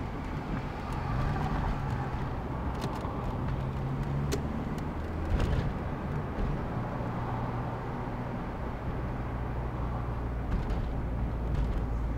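Car driving in city traffic, heard from inside: a steady low engine hum and road noise, with a few faint clicks.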